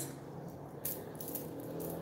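Faint clicks and rustles of a hand handling the recording device close to its microphone, with a few small taps about a second in, over a low steady hum.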